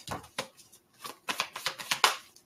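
A deck of tarot cards being shuffled by hand: a run of quick card flicks and taps, sparse at first and coming thick and fast in the second half.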